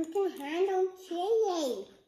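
A young boy's sing-song babble without clear words: two drawn-out phrases, the pitch climbing and dipping, the second sliding down at the end.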